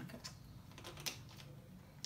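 Faint, irregular clicks and crackles of a plastic water bottle being handled, its screw cap being twisted.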